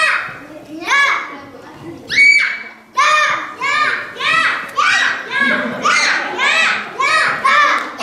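Children's voices chanting in a steady rhythm, about two high-pitched syllables a second, with a brief break about two seconds in.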